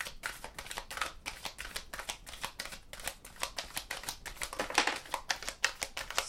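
A deck of tarot cards being shuffled by hand: a quick, uneven run of card flicks and slaps, with one sharper slap about five seconds in.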